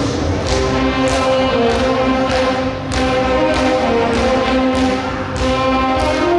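Saxophone ensemble playing a tune in long held notes over a steady beat, about one beat every 0.6 seconds.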